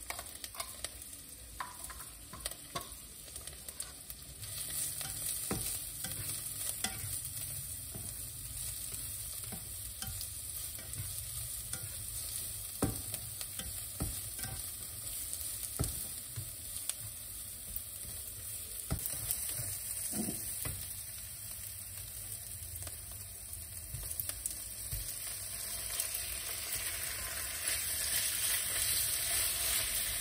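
Onion and garlic sizzling in light oil in a nonstick frying pan, stirred with a spatula that clicks and scrapes against the pan now and then. The sizzle gets louder a few seconds in and again near the end.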